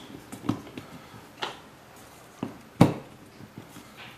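A few short clicks and knocks of Bowflex SelectTech 552 dumbbell selector discs being fitted onto the dial and snapped together, the loudest near three seconds in.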